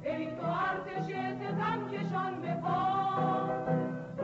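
A choir singing a Persian-language revolutionary workers' anthem.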